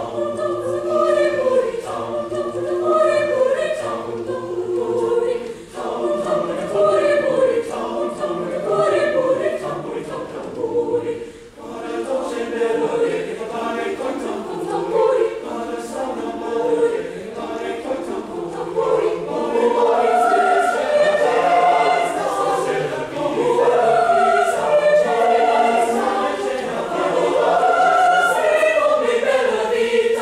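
A mixed-voice high school chamber choir singing in parts, with a brief break a little before the middle and fuller, louder phrases over the last third.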